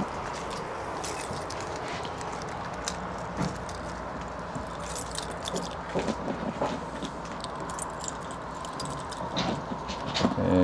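Keys on a lanyard jangling and clicking as a key is worked in the lock of a small RV exterior hatch, the outdoor shower compartment, in a few light scattered rattles over steady background noise.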